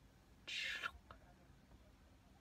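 A woman's short breathy whisper about half a second in, without voice, lasting under half a second; otherwise quiet room tone.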